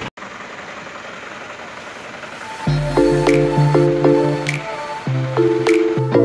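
Background music: after a soft hiss, sustained chords over a low bass come in about two and a half seconds in, with short high plinks laid over them.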